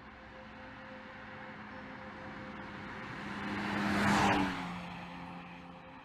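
BMW X4 M's twin-turbo straight-six driving past at speed: the engine and tyre noise swell to a peak about four seconds in, the pitch drops as the car goes by, and the sound then fades away.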